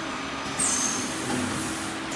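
Integrated left-and-right CNC tube bending machine running with a steady machine hum. About half a second in comes a short, louder hiss of compressed air from its pneumatics.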